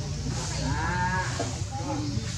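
A voice making long, wavering drawn-out sounds twice, over a steady low hum.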